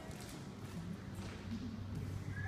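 Low steady electrical hum from the band's amplification, growing stronger about a second in, with a few faint taps and knocks from the players handling their gear.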